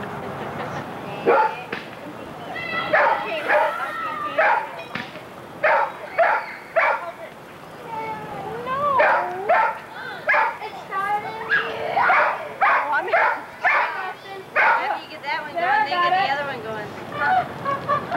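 People's voices outdoors, a string of short shouts, calls and cries, several a second, rising and falling in pitch.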